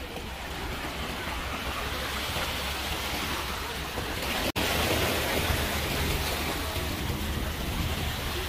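Sea water washing and splashing against granite shore rocks, a steady rush with wind on the microphone. It cuts out for an instant about halfway through, then carries on much the same.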